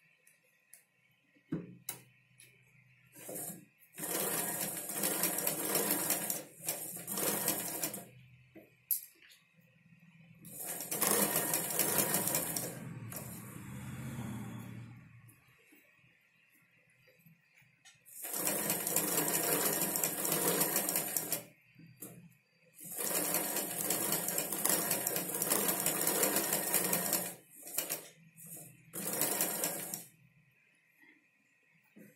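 Black domestic straight-stitch sewing machine stitching through cloth and a paper pattern. It runs in four bursts of a few seconds each, with short pauses and a few clicks between them.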